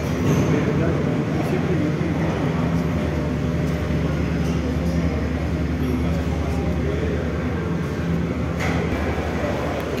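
Steady mechanical hum of a Metrocable aerial cable car system, its drive and cabins running continuously, with voices talking faintly in the background.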